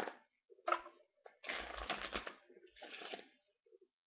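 A deck of Bicycle playing cards being riffle-shuffled by hand. A dense run of rapid card clicks lasts about a second from a second and a half in, with shorter bursts of card rustling before and after it.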